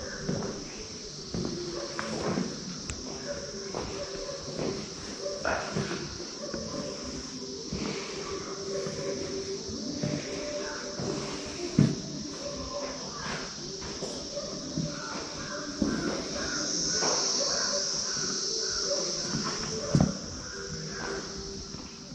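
A steady high-pitched drone of insects, growing louder about three-quarters of the way through, over faint voices and a couple of sharp knocks.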